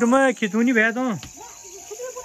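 Crickets chirping steadily in the background. A person's voice talks over them for about the first second and is the loudest sound.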